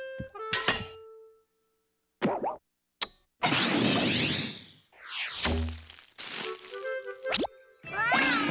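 Cartoon sound effects with orchestral music: a held note fades out, then comes a short burst and a click, then a long loud whoosh as a toilet plunger flies through the air with Woody stuck to it. A second whoosh carries a low thud, and a few short musical notes end in a quick rising glide.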